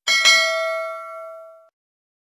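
Notification-bell sound effect: a bright bell ding struck twice in quick succession, its ringing tones fading out within about a second and a half.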